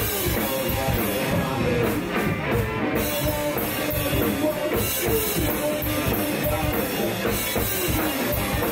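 A rock band playing live: two electric guitars, a drum kit and a singer. About two seconds in, the cymbals drop out for around a second.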